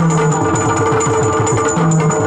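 Yakshagana accompaniment: a fast run of hand-played maddale drum strokes, each dropping in pitch, over a steady drone.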